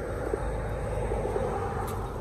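A steady low rumble of outdoor background noise with no distinct event in it.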